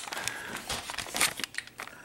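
Crumpled sheet of lined notebook paper crinkling and rustling as it is handled, a run of irregular soft crackles.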